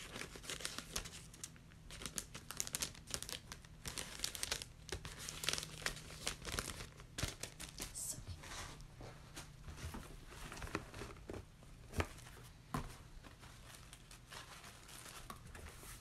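Clear plastic bag crinkling and rustling as it is handled and a paper slip and card are pulled from it, in a run of irregular crackles with one sharper click about three quarters of the way through.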